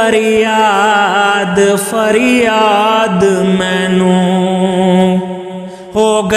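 Sufi kalam singing: a drawn-out, wordless vocal line that bends up and down, then holds one steady note for about two seconds and fades out just before the end.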